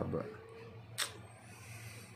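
A single sharp click about halfway through, over a faint steady low hum.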